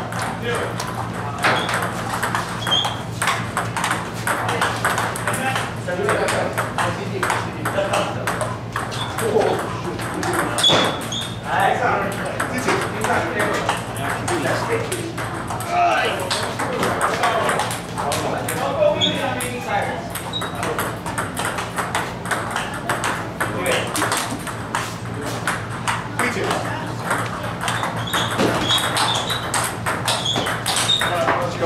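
Table tennis rallies: the plastic ball clicks sharply off the rubber paddles and the table in quick, irregular sequences. Voices carry through the hall, and a steady low hum runs underneath.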